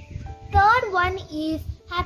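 A child singing over background music.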